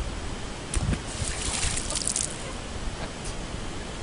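Lake water sloshing and trickling against the rocks at the water's edge, over a low rumble. A brief hissing surge comes between about one and two seconds in.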